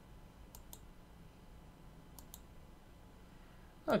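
Light computer mouse-button clicks: two quick pairs, about half a second in and again about two seconds in.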